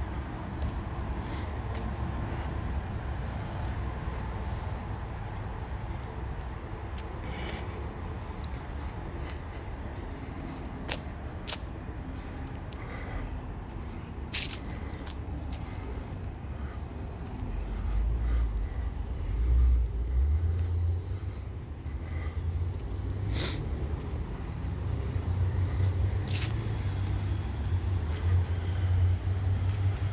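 Outdoor ambience on a handheld phone during a walk: a steady high insect drone over a low, uneven wind rumble on the microphone that grows louder about two-thirds of the way through, with a few scattered sharp clicks.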